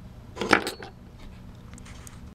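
Brief light metallic clatter about half a second in as a small finned aluminium LED bulb is handled and set down on a wooden bench, followed by a few faint clicks near the end.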